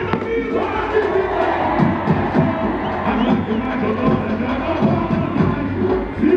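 Samba parade music, a drum section's steady beat with sung samba-enredo, under a large stadium crowd cheering and singing along; the crowd noise swells about half a second in.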